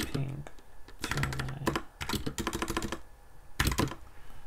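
Computer keyboard typing: three quick bursts of keystrokes as a command is entered.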